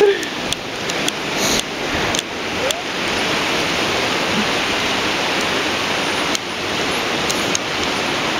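A fast mountain river rushing over rocky rapids: a steady, even rush of water that grows a little louder over the first few seconds, then holds.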